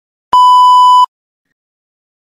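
A single loud electronic beep: one steady, buzzy tone lasting under a second, starting and stopping abruptly. It is the cue signalling that the answer time for interpreting the segment has begun.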